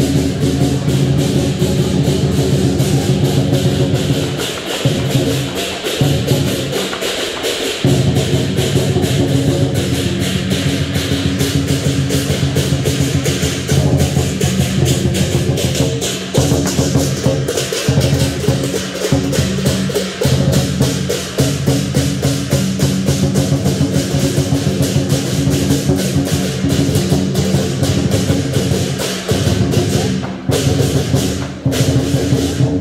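Lion dance percussion: a large drum beaten in fast, continuous rolls with clashing cymbals, loud and driving, with a few brief breaks in the drumming in the first eight seconds.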